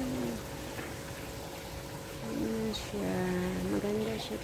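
A dove cooing in low notes: one brief coo at the start, then a longer phrase of several stepped coos from about two seconds in.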